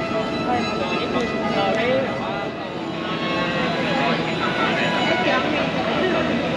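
Voices of people talking over one another in a large hall, over a steady hum that holds several tones throughout.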